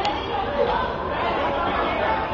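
Indistinct chatter of several voices talking and calling out over one another, with a brief sharp high click right at the start.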